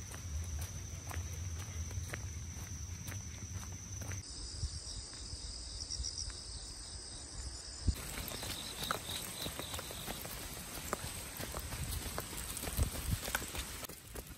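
Footsteps of a walker and a leashed dog on a wet paved path, an uneven patter of light steps, under steady high-pitched insect song that changes pitch abruptly about four and eight seconds in.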